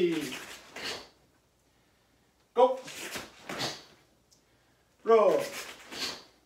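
A male karate instructor calling out Japanese drill counts, one short sharp call falling in pitch about every two and a half seconds, three times. Each call is followed by a brief swish as he steps and punches in his gi.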